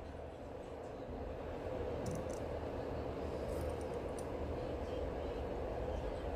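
Steady low background rumble and hum, a little louder after about a second in, with a few faint ticks around two and four seconds in.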